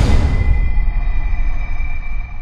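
Cinematic logo-reveal sound effect: a sharp hit right at the start, then a deep low rumble with a thin high tone held over it.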